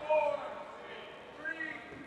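Faint voices calling out across a large gym: a short call just after the start and another about one and a half seconds in, over low room noise.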